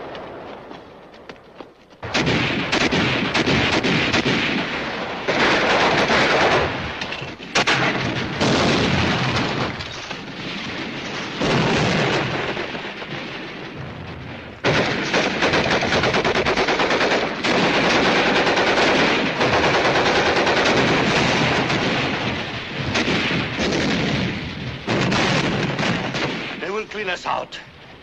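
Battle sound effects from a 1950s war film: sustained rapid machine-gun and rifle fire with heavier blasts. It starts about two seconds in and runs with several abrupt surges until shortly before the end.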